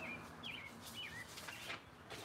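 A small bird chirping outdoors, a few short chirps that bend up and down in pitch, with soft clicks or rustles near the end.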